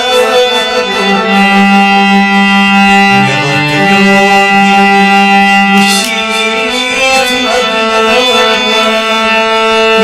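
Harmonium playing long held notes and chords that change in steps, with a man singing a slow Kashmiri song over it.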